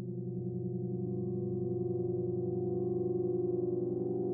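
Background music: a held low keyboard chord with a fast, even pulsing wobble, growing slightly louder.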